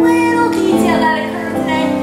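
A female voice singing held notes with musical accompaniment, the melody stepping to a new pitch twice.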